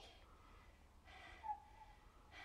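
Near silence, broken by a woman's short breath out about a second and a half in.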